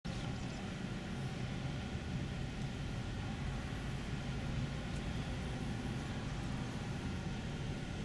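Steady low rumble of a vehicle engine running, unchanging throughout, with a few faint steady hum tones above it.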